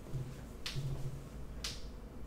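Two sharp clicks or snaps about a second apart, over a faint low hum.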